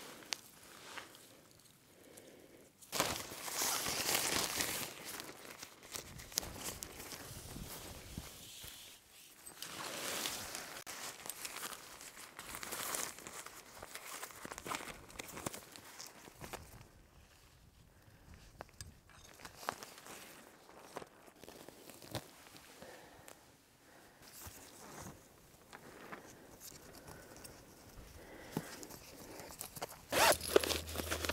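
Nylon tarp fabric rustling and crinkling in irregular bursts as it is unfolded and pitched, with footsteps and scattered small knocks.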